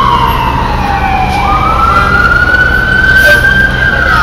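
Emergency vehicle siren wailing loudly: one slow sweep that falls in pitch over the first second and a half, then climbs back up.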